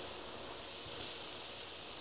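Faint steady hiss of room tone and microphone noise between spoken phrases, with a faint click about halfway through.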